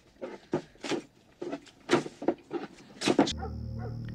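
A dog barking repeatedly off-screen, about two to three barks a second. A low steady hum comes in near the end.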